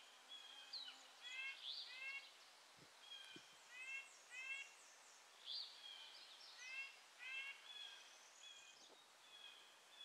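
Faint woodland birdsong: short calls repeated in pairs and small runs throughout, with thinner, higher notes from another bird between them.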